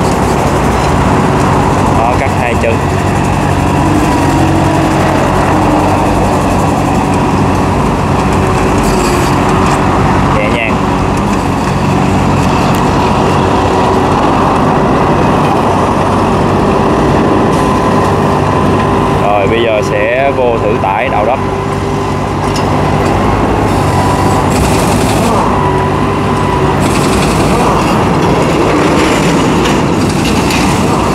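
Hitachi EX15-1 mini excavator's diesel engine running steadily under load, with a hydraulic whine that rises and falls as the boom and bucket dig. A brief wavering squeal comes about twenty seconds in.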